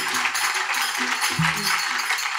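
Audience applauding: a dense, steady patter of many hands clapping.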